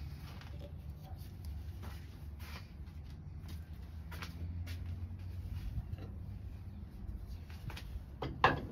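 A few light clicks and knocks from handling the wood lathe's metal chuck and pine jam chuck, over a steady low hum.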